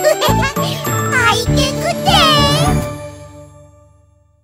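The closing bars of a Korean children's tooth-brushing song: bright music with chimes and a child's voice calling out. The music ends about three seconds in and rings out.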